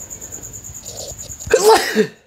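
One sudden, loud burst of a person's voice and breath, about a second and a half in, lasting about half a second.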